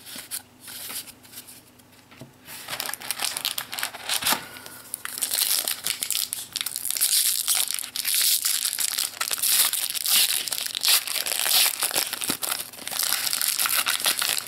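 Foil trading-card booster pack wrapper crinkling and crackling as fingers work it open. Light rustling at first, then the crinkling gets louder and denser about five seconds in and keeps going.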